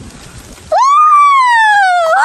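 A person's long, high-pitched shout starting about three-quarters of a second in, rising quickly and then sliding slowly down in pitch.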